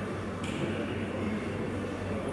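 Steady hum and hiss of air conditioning running in a large room, with the hiss growing a little louder about half a second in.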